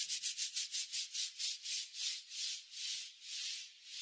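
Quiet pulses of high hiss, an electronic noise effect in the remix's outro, repeating about six times a second at first and slowing steadily to under two a second.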